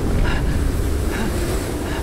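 Deep, steady rumbling of a dramatic film sound effect for a fiery, smoke-filled cataclysm, easing slightly near the end, with a few faint short tones above it.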